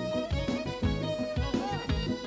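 Uzbek folk dance music played live on electric keyboards, a fiddle and a long-necked lute over a fast, steady drum beat; instrumental, with no singing.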